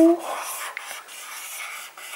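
Felt-tip dry-erase marker rubbing and squeaking faintly across a small whiteboard slate as letters are written in joined-up strokes.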